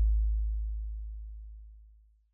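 The final deep synth bass note of an electronic instrumental beat, a low steady tone fading away and dying out near the end.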